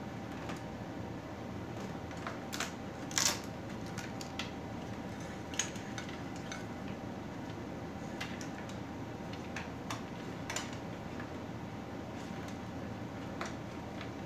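Scattered light clicks and metallic knocks as a circuit board and its ribbon cable are moved about on the sheet-metal back chassis of an opened LED TV, the loudest about three seconds in. A steady low hum runs underneath.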